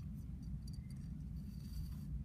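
Yarn being pulled through the holes of a hand-made clay weaving loom, with soft rubbing and a few light ticks about half a second in, over a faint steady room hum.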